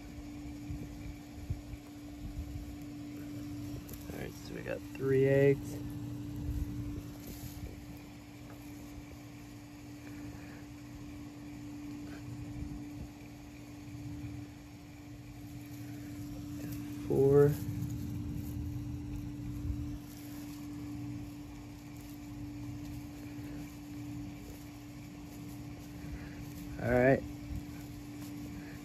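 Hand digging into sandy soil and pine needles to uncover a redfoot tortoise nest: soft scraping and rustling under a steady low hum. Three short vocal sounds come about 5, 17 and 27 seconds in.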